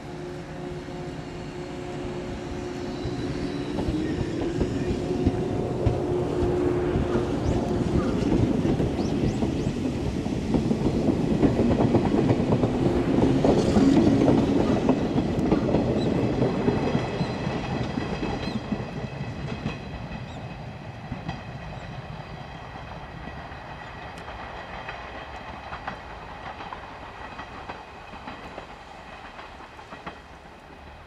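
A JR 107 series electric multiple unit running into the platform, its wheels clattering over the rail joints. The sound builds to its loudest about halfway through as the cars pass close by, then fades away.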